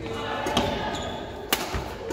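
Badminton rally: a racket strikes the shuttlecock with a sharp crack about a second and a half in, with a lighter hit earlier, amid the thuds of players' footsteps on the wooden court.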